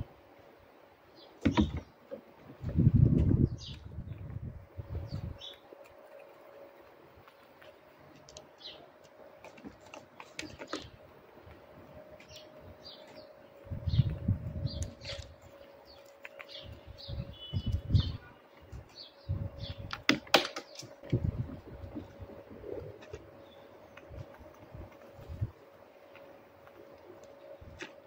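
Grey squirrel handling and chewing peanuts in their shells close by, with irregular crunches and knocks. Small birds chirp briefly now and then over a faint steady hum.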